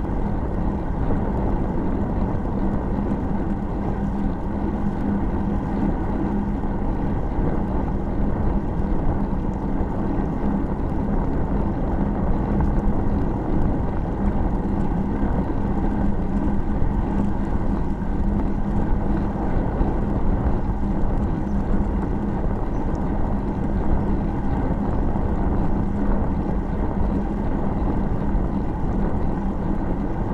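Steady wind rumble on a bicycle-mounted camera's microphone as the bike rolls along at riding speed, with a steady low hum underneath.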